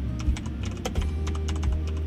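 Computer keyboard being typed on: a quick, irregular run of key clicks, over a low background music bed.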